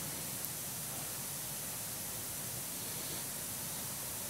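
Steady, even hiss of room tone and recording noise, with no other sound.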